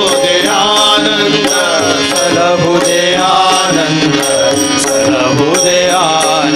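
Live devotional bhajan: voices singing a flowing, ornamented melody over a steady harmonium, with tabla and regular bright strikes keeping time about twice a second.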